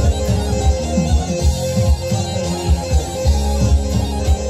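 Live folk band playing Macedonian dance music from the Florina region, with sustained melody notes over a moving bass line and a steady drum beat.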